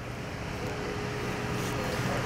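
Steady outdoor background noise with a low hum and a faint steady tone, like distant traffic.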